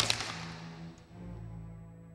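A single sudden sharp crack with a short hissing tail that fades within about half a second, over steady background music.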